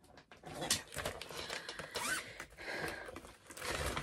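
Rustling and shuffling of papers and objects being rummaged through in a search for a printed cross-stitch chart, in irregular bursts, with a brief faint high squeak about two seconds in.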